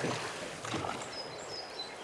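Steady rush of river current around a floating boat, with a few faint, short high bird chirps about a second in.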